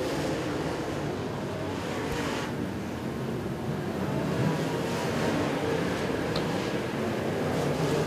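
A field of dirt-track modified race cars running laps together, their engines merging into one steady drone with engine notes wavering up and down.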